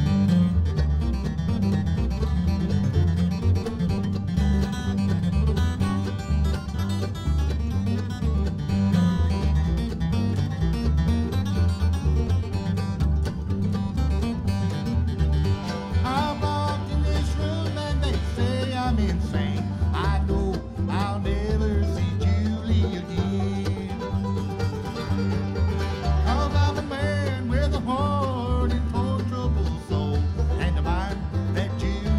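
Live bluegrass band playing a song on banjo, upright bass, acoustic guitar and mandolin. The first half is an instrumental break, and a man's lead vocal comes in about halfway through.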